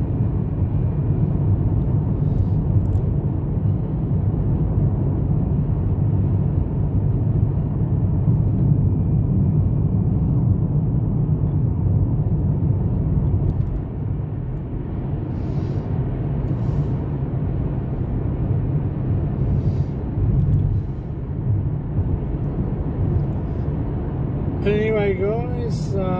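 Car cabin noise while driving at highway speed: a steady low rumble of tyres and engine. A voice speaks briefly near the end.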